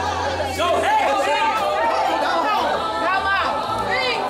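Live gospel music with several voices singing and calling out together over a band with a steady low bass, with congregation voices mixed in.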